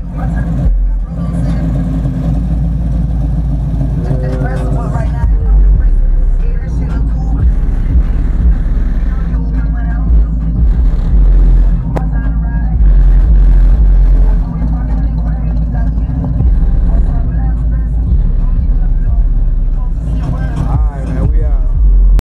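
1973 Chevrolet Caprice's big-block V8 running with a loud, deep exhaust rumble, its level swelling and dropping several times.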